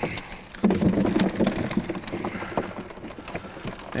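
Water dripping and splattering, with catfish flopping, as a hoop net is rolled to spill its catch into a lug. It comes as many irregular small knocks and splashes, with a louder burst a little over half a second in.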